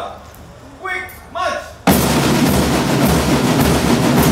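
Two short shouted calls, then a marching band of drums and brass comes in abruptly just before two seconds in and plays on with a steady, evenly spaced drum beat.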